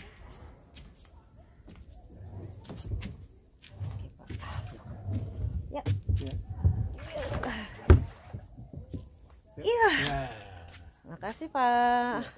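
Scuffing, bumping and footsteps as a person climbs down out of a beached fibreglass boat onto sand, with one sharp knock about eight seconds in. Short voiced exclamations follow near the end.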